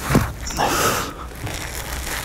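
Gritty crunching and scraping of mould material being broken away from a fresh metal casting: a short scrape at the start, then a louder crunch about half a second in.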